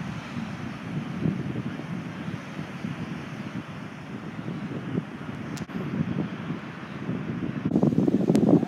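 Wind buffeting the microphone in uneven gusts, with the wash of ocean surf behind it.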